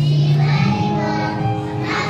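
A kindergarten class singing together over instrumental accompaniment, with a held low accompaniment note that changes about half a second in.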